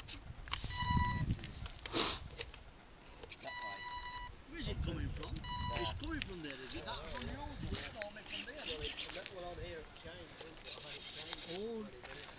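Three electronic beeps of one pitch, each under a second long, in the first half, followed by indistinct voices talking.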